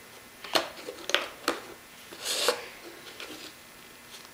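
A plastic tub handled on a countertop: three light clicks and knocks in the first second and a half, then a short scraping rub a little after the middle as the tub is moved and lifted.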